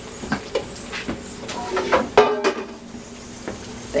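Metal cookware clinking and clanking as the aluminum steam-canner lid is handled and set aside after processing: a few light clicks, then a louder ringing clank about two seconds in.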